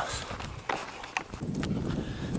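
Brisk footsteps on a dirt and gravel path, about two steps a second, each step jolting the handheld camera and adding a knock to the low rumble of handling on its microphone.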